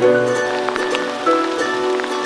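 Background music: held notes with short notes starting over them.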